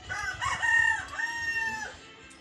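A rooster crowing once: a few short notes, then a long held note that drops away at the end.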